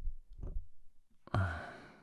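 A man sighing heavily into a close microphone: a sudden breathy exhale with a brief voiced start about a second and a half in, fading away over most of a second.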